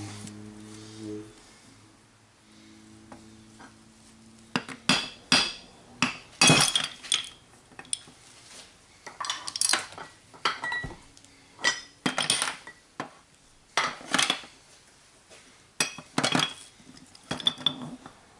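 Metal parts of a Denso 10P30-style A/C compressor clinking and clanking as the pistons and swash-plate assembly are handled and knocked against the case and a steel drip pan. About a dozen sharp metallic knocks, some ringing briefly, start about four seconds in.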